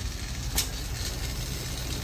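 Steady low machine hum with a single short click about half a second in.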